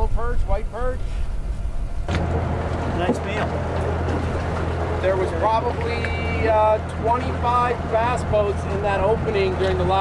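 Honda outboard motor running steadily with a low hum, setting in abruptly about two seconds in, under people talking.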